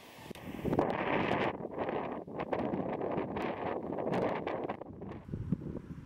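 Wind buffeting the camera microphone: an uneven rumbling rush with crackles. It strengthens about a second in and eases near the end.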